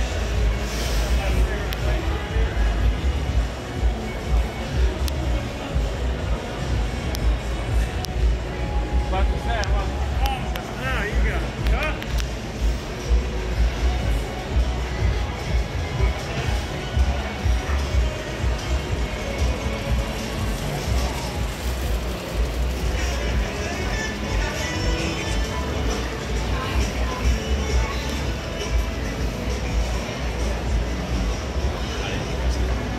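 Music playing amid the chatter of passing shoppers in a busy market, over a constant low rumble.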